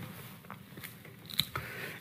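Quiet room tone in a small studio with a few faint, scattered clicks, the sharpest about one and a half seconds in.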